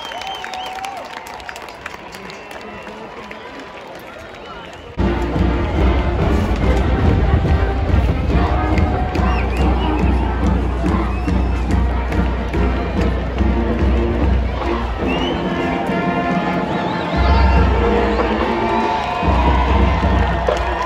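A stadium crowd cheering and chattering. About five seconds in, the sound jumps suddenly to loud music with a heavy bass, which carries on over the crowd.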